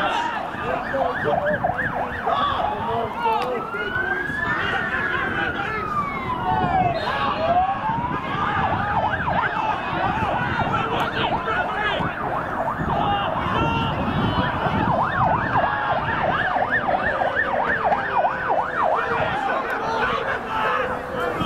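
An emergency vehicle siren sounding: a slow wail that rises and falls over several seconds early in the stretch, then a fast repeating yelp, with crowd voices under it.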